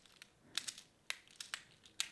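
Small magnetic fidget rings clicking against each other as the fingers wearing them move: a series of faint, irregular clicks as the magnets snap together and apart.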